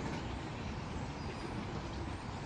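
Steady outdoor background noise with a low, uneven rumble and a few faint high chirps.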